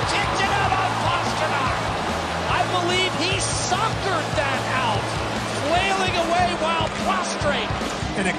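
Hockey arena game sound: voices over steady low music that stops about six seconds in, with sharp clacks of sticks and puck on the ice.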